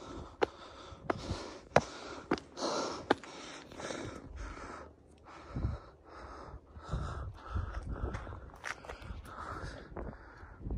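Footsteps on a rocky, gravelly mountain trail, with sharp clicks of shoes on stone in the first few seconds, and a hiker's hard breathing throughout. Low wind rumbles on the microphone in the second half.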